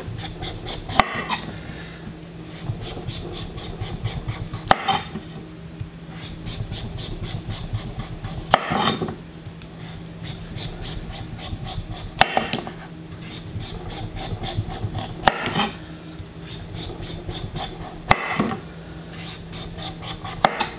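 Chef's knife shaving the skin off an upright butternut squash in slow downward strokes. Each stroke is a rasping scrape through the tough skin, ending in a sharp knock on the wooden cutting board, about every three to four seconds.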